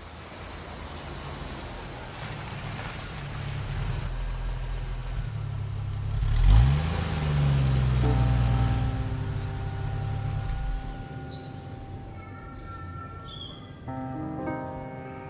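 A car's engine approaching and passing close by: it grows louder, peaks about halfway through with a quick sweep in pitch, then fades away. A few held tones come in during the second half.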